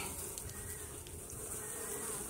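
Honey bees buzzing at the entrance of a colony nesting in a hollow tree: a steady, even hum.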